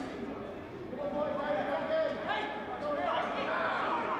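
Players' and coaches' shouts and calls on the pitch, echoing around empty stands.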